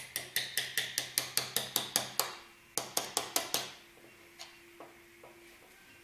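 A small metal wrench tapping lightly and quickly on the edge of a 3D print on its printer build plate, about five taps a second, to work the print loose from the plate without breaking it. Two quick runs of taps in the first half, then a few fainter taps.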